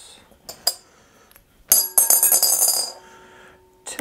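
A referee coin dropping into a glass mixing bowl: a couple of light clicks, then about a second and a half in the coin lands and clatters round the glass with a bright metallic ring, settling after about a second.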